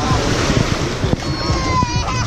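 Small waves washing on the shore of a sandy beach, with wind buffeting the microphone. A faint high call from the swimmers comes in over it partway through.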